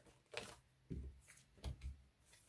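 Tarot cards being drawn from a deck and laid down on a cloth-covered spread: a few faint, brief slides and taps of card against card.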